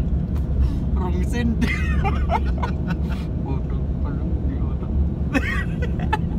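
Steady low rumble of a car's engine and tyres heard from inside the cabin while driving on a highway.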